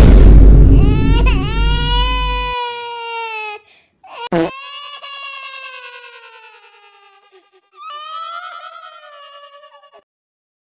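A high voice wailing in three long, drawn-out cries, each sliding slowly down in pitch. The first cry sits over a loud, distorted rumble that cuts off about two and a half seconds in.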